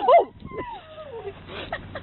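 A young child's high-pitched vocal cries: a loud squeal at the start, then a long falling whine, and a few short cries near the end.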